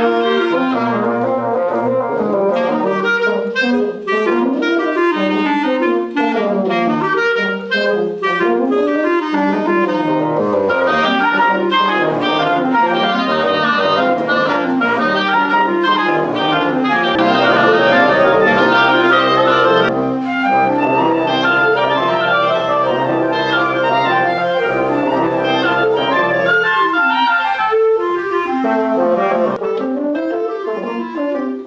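Woodwind quintet of flute, oboe, clarinet, bassoon and French horn playing a piece together, several melodic lines weaving over one another. Sustained low notes join in about halfway through.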